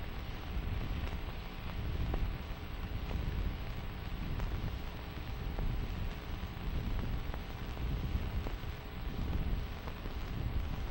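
Background noise of an old film soundtrack: a steady low rumble and hiss with a few faint clicks scattered through it. There is no music and no voice.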